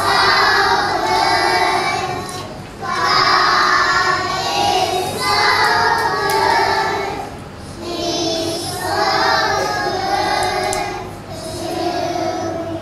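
A choir of three- and four-year-old preschool children singing together, in phrases of a few seconds with short pauses for breath three times.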